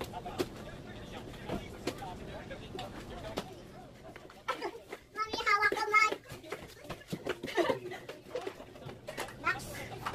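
A small child's high voice calling out in Tagalog, "Mommy, hawak kamay" ("Mommy, let's hold hands"), loudest about five to six seconds in. Scattered light knocks sound throughout.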